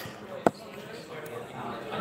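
A single sharp knock about half a second in, over background voices.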